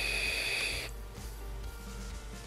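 Steady airy hiss of a draw through a vape tank while the box mod fires its mesh coil at 65 watts, with a faint high whistle through the airflow; it stops about a second in.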